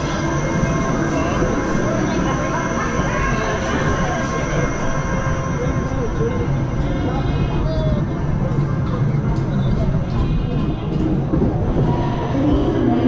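Roller coaster train rolling out of the station along its steel track, a steady rumble of wheels on rail, with voices and background music faintly underneath.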